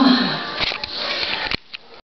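Close handling noise and breathing on the microphone as the webcam is reached for and covered. A short voice sound falls in pitch at the start, and a sharp click comes about a second and a half in, after which it goes much quieter.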